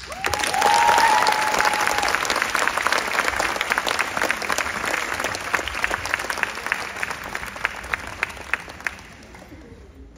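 Audience applauding, with one high held cheer from the crowd about half a second in; the clapping thins to scattered claps and fades out near the end.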